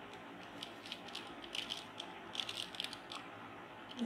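Faint, irregular clicks and rattles of a plastic 3x3 mirror cube's layers being turned and handled.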